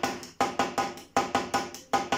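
Roland V-Drums electronic drum kit, one hand striking a pad: groups of three pitched drum notes, the first of each louder, about three groups in two seconds. This is one hand's part of the flam-tap rudiment.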